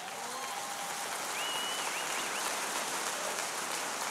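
Large congregation applauding steadily, swelling over the first second. A voice calls out briefly in the middle.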